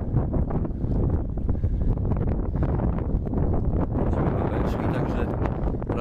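Wind buffeting the microphone of a camera carried on a moving bicycle, a steady low rumble.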